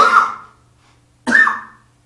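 A man coughing twice, a little over a second apart, each cough sudden and loud.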